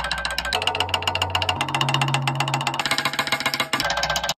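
Drumstick rattled rapidly against a drum's metal rim: a fast, continuous clatter of clicks that breaks off briefly near the end. A low steady tone sounds underneath and steps up in pitch twice.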